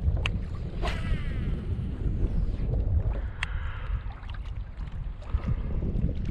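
Wind buffeting the microphone with a rough, low rumble, broken by a few sharp clicks and a brief faint whirring sweep about a second in.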